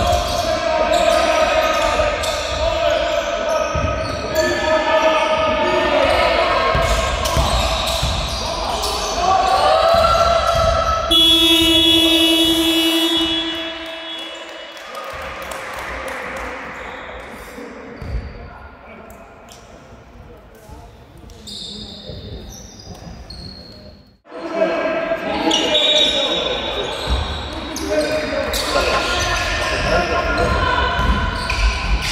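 Basketball dribbling and bouncing on a hardwood sports-hall floor amid players' shouts. About eleven seconds in, the scoreboard buzzer sounds a steady tone for about two seconds, ending the quarter. After a short quiet gap, dribbling and calls start again.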